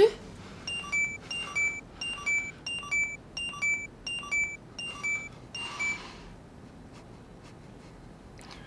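LED heart-rate monitor wristwatch beeping in time with the wearer's pulse: a quick, even run of short electronic chirps, a little over two a second, that stops about six seconds in. The fast beeping signals a racing, pounding heartbeat.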